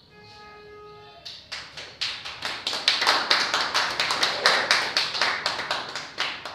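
An audience applauding by hand. It starts about a second in with scattered claps, swells to steady applause and thins out at the end.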